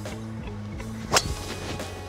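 Golf driver striking a ball off the tee at full power: one sharp crack a little over a second in, over background music. The shot is a hard-hit drive with a ball speed of 187 mph.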